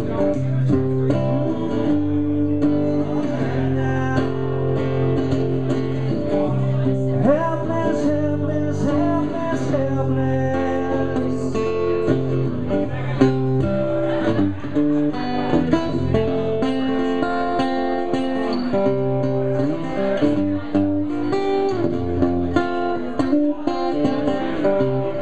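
Live solo guitar music: chords played over held low notes.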